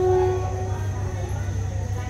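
Passenger train coaches moving slowly past a station platform with a steady low rumble. A steady horn tone, held since just before, stops about half a second in.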